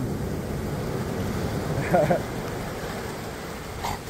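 Ocean surf breaking and washing up the beach: a steady rush of noise, with a brief vocal sound about halfway through.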